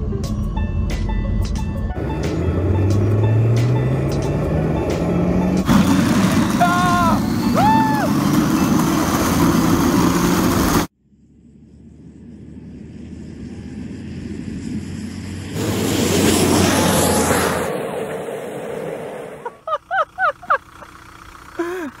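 Car engine rising in pitch as it accelerates, over loud road noise, with a couple of whooping shouts. After a sudden cut, a vehicle passes by, swelling and fading. Bursts of laughter come near the end.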